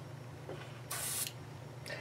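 A short hiss of air from an airbrush, about a second in and lasting under half a second, over a faint steady low hum.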